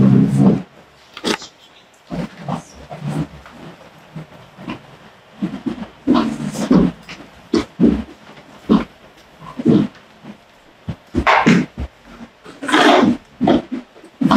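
Chairs being moved on a hardwood floor: a series of short scrapes and knocks as several seats are dragged, lifted and set down again.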